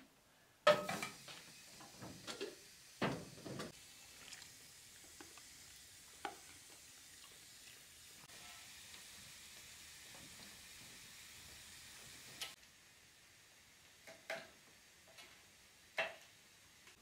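A pan set down with a loud clank on the cast-iron top of a wood-burning stove, followed by a few knocks and clatters of cookware. Then chicken livers sizzle steadily in the hot pot for several seconds, and the sizzle cuts off suddenly.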